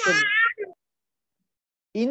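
A short, high-pitched, slightly wavering cry lasting about half a second at the start.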